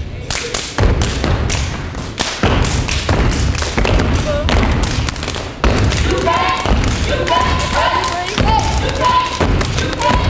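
Step team stepping on a stage floor: rapid, rhythmic stomps and hand claps throughout. From a little past halfway, voices call out in rhythm over the stomping.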